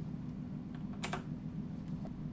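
Low, steady room hum, with one short, soft noise about a second in.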